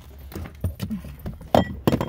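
Jingling and clicking handling noises of small loose metal items, with two sharp knocks near the end.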